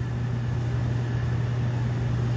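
Steady low hum with a faint hiss over it, unbroken through the pause in the talk.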